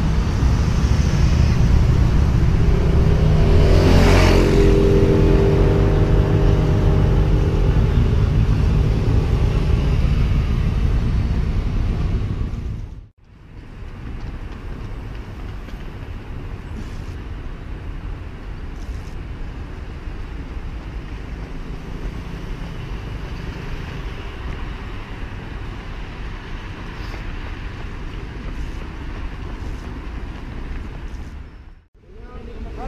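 A motorcycle engine passing close by, loudest about four seconds in, then fading until the sound cuts off sharply about thirteen seconds in. After that, a steady, quieter outdoor background noise with a few faint ticks.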